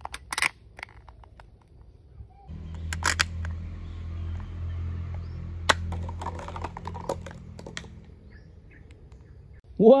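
Plastic clicks of a toy spring-loaded MP5 being cocked. Then sharp snaps of a toy gun firing soft rubber darts, about three and six seconds in, followed by a run of lighter clicks, over a low steady hum.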